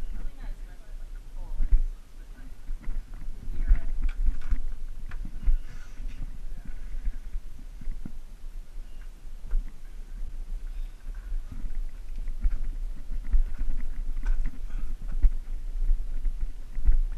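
Irregular scuffs and knocks of bodies and clothing against rock as people crawl through a tight cave passage, with a low rumble from the camera being jostled and some indistinct voices.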